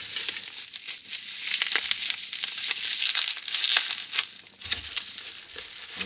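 Plastic bubble wrap crinkling and crackling irregularly as hands rummage through a packed box and unwrap a vacuum tube, with packing peanuts rustling against cardboard.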